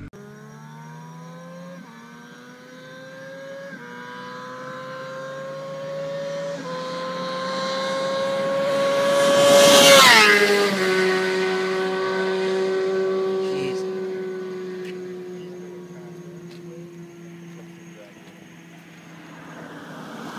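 A car accelerating hard down the strip, its engine note climbing and dropping back at three upshifts. It passes close by about halfway through with a sharp drop in pitch, then fades as it pulls away.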